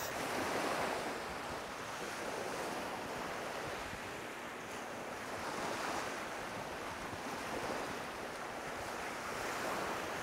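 Small waves breaking and washing up on a beach, the wash swelling and ebbing every few seconds, with wind.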